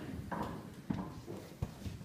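A few scattered knocks and light taps over a low background murmur.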